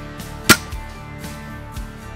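Background guitar music, cut through about half a second in by one sharp, loud crack from the air-rifle field-target shooting.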